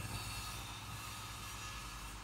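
Faint steady background hiss with a low hum, no distinct events.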